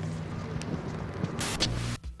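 A steady low hum under a noisy hiss, then near the end a loud rushing swish lasting about half a second: a whoosh sound effect laid over a whip-pan transition.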